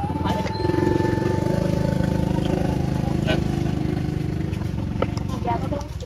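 A small engine running steadily, growing louder about a second in and fading near the end, with a couple of sharp clicks over it.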